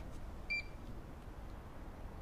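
A single short electronic beep about half a second in, from a checkout barcode scanner reading an item at the till, over a faint low hum.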